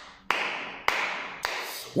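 Four sharp hand claps, evenly about half a second apart, each dying away slowly in an echo.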